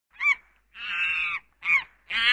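Animal calls: a short call, then a longer steady call lasting about half a second, then another short call whose pitch rises and falls.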